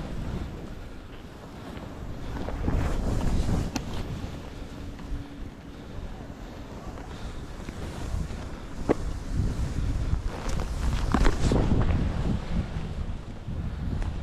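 Wind rushing over the microphone of a skier going downhill, rising and falling with speed, over the hiss and scrape of skis through chopped-up snow. A few sharp clicks stand out, from about four seconds in and several more in the second half.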